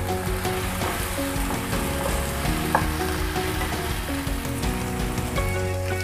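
Chopped onion and tomato frying in oil in a ceramic-coated frying pan, sizzling steadily as a wooden spatula stirs them.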